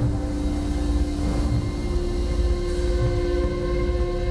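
Dramatic background score: a sustained, dark drone chord over a heavy low rumble, its main note stepping up to a higher pitch about a second and a half in.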